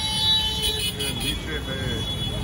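Busy street background: a steady low rumble of road traffic with voices of passers-by talking in the background.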